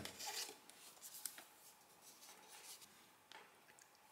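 Faint rubbing of a small cardboard card being slid out of the printing slot of an industrial counter, followed by a few light clicks; otherwise near silence.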